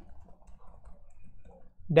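Soft, faint clicking of computer keyboard keys being typed.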